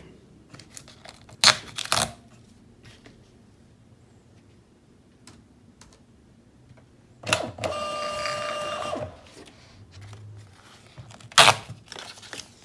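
Rollo direct thermal label printer running a test print after its print head was cleaned, its feed motor giving a steady whine for about two seconds as labels advance. Sharp knocks of handling come a second and a half in and again near the end.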